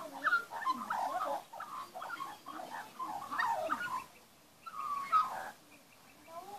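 Young Australian magpie warbling: a run of rapid, gliding notes for about four seconds, a brief pause, then one more short phrase near the end.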